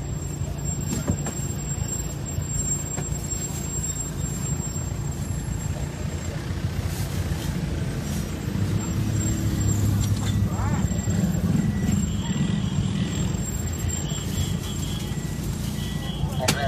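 A vehicle engine running steadily at low speed, heard from inside the cab, its low hum growing a little louder about halfway through.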